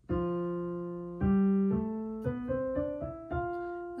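Kawai piano played with both hands: a run of chords, each struck and left to ring, stepping up the keyboard in an eighth-note 'scoops' exercise.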